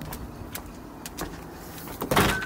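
A husky's claws tapping on concrete steps, a few light clicks, over a low steady rumble.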